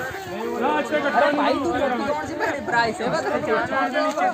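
Several people talking at once: overlapping voices in chatter, with no single voice standing out.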